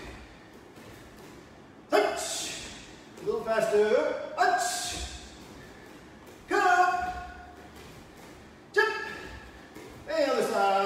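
A man calling out short shouted counts as he leads a karate drill, five calls spaced a second or two apart, each trailing off into a quiet hall.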